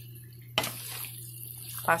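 Wooden spoon stirring ziti through thick Alfredo sauce in a pan: soft wet squelching of the coated pasta, with one sharp knock of the spoon on the pan about half a second in, over a steady low hum.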